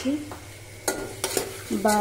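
A spoon stirring tomatoes and spices in hot oil in a pressure cooker pot, with a few sharp clicks against the pot about a second in and a faint sizzle of frying underneath.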